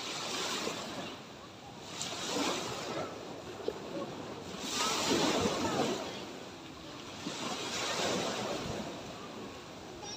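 Small sea waves breaking and washing up a sandy beach, rising and falling in swells every two to three seconds, the biggest about five seconds in.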